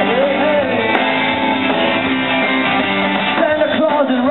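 Live rock band playing electric guitar over drums and cymbals, with a bending melodic line near the start.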